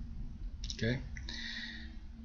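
A few short computer mouse clicks.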